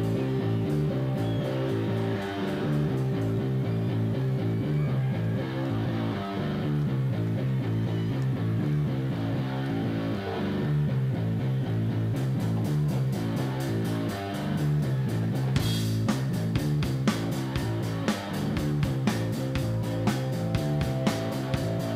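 Live rock band opening a song: an electric bass plays a repeating low riff alongside electric guitar, and the drums and cymbals come in more strongly about twelve seconds in.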